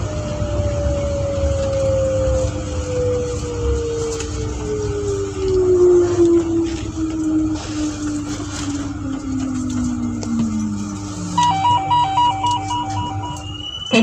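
Interior of a New Shuttle 1050-series rubber-tyred people mover slowing for a station. The electric traction motor whine falls steadily in pitch over a low running rumble and a steady hum. Near the end come short repeated electronic beeps.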